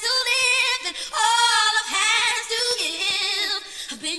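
A woman singing long, wavering notes, with almost no bass or beat underneath, like the vocal breakdown of a house track. The voice drops away briefly a little over three seconds in.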